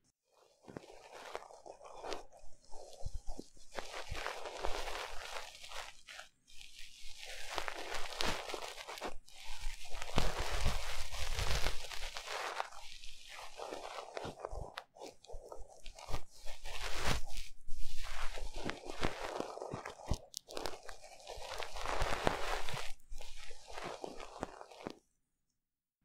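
ASMR ear-cleaning sounds on a 3Dio binaural microphone: scratching and rubbing at the microphone's ear in uneven rustling strokes, with short pauses, stopping shortly before the end.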